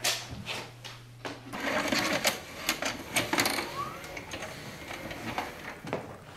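A video cassette recorder taking in a VHS tape: its loading mechanism whirs and clicks for a couple of seconds, with a short rising squeak near the end.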